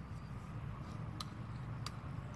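Quiet low background rumble with two faint ticks, one a little past a second in and one near the end, from a tape measure being handled while it is stretched along a fish.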